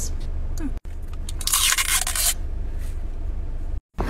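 A person biting into a Martinelli's apple juice bottle: one crisp crunch about one and a half seconds in, lasting under a second, the bite that is said to sound like biting into an apple. A steady low hum runs underneath.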